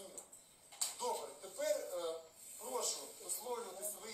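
Speech: a voice talking in a small room, with a short click just under a second in.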